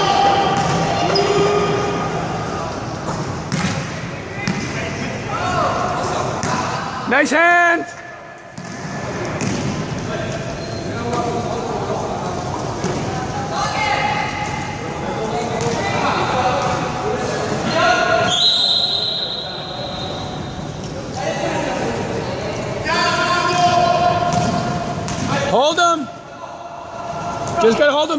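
Unicycle basketball game in a reverberant sports hall: players calling out over a basketball bouncing on the court floor. Sharp squeaks come about a quarter of the way in and again near the end, and a high steady tone sounds for about two seconds a little past the middle.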